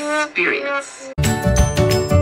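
A woman's voice ending a short word, then background music with a steady beat starting abruptly about a second in.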